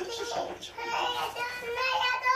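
Toddlers' high-pitched voices while playing, drawn out and wordless, running almost without a break.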